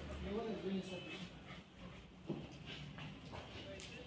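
Faint, indistinct voices with the rustle of clothes being pulled from a pile of used garments, and one sharp knock a little past two seconds in.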